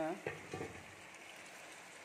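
Meat and potato curry simmering in a wok: a faint, steady sizzle after a brief click near the start.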